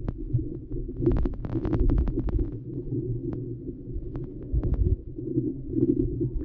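River water heard underwater through a submerged action camera: a steady muffled low rumble with scattered sharp clicks, a dense run of them about a second in.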